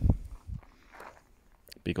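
Footsteps of a person walking on dry, mown grass, with a heavy low thump right at the start and a softer one about half a second later.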